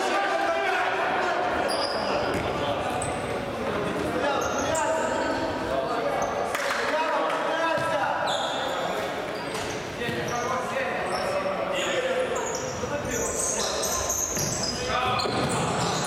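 Futsal ball being kicked and bouncing on a sports-hall floor, with short high squeaks of shoes on the court and players' shouts, all echoing in the large hall.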